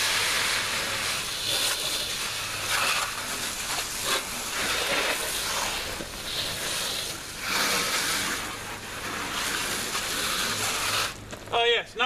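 Garden hose spray nozzle spraying water onto a pickup truck's body, a continuous spray that swells and fades as the stream moves over the panels, then cuts off sharply shortly before the end.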